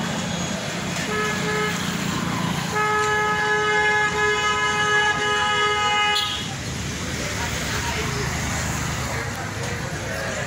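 A horn-like blown note on one steady pitch sounds briefly about a second in, then is held for about three and a half seconds, over the chatter of a crowd.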